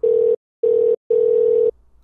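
Three beeps of a single steady electronic tone, the third about twice as long as the first two.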